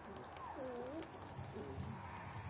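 Young puppies whimpering: a whine about half a second in that dips and rises in pitch, then a shorter one a second later.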